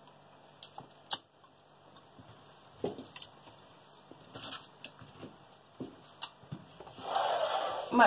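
A few light clicks and knocks of kitchen things being handled on a countertop, then near the end a wet rasping as half a lemon is twisted on a plastic citrus juicer.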